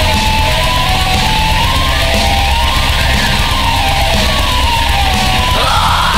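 Pagan black metal: distorted guitars, bass and drums under a melodic lead line. A harsh screamed vocal comes in near the end.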